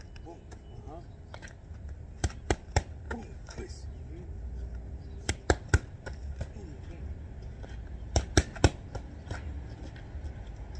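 Boxing gloves smacking into focus mitts in three quick three-punch combinations, each a rapid set of three sharp hits, the sets about three seconds apart. A steady low rumble lies underneath.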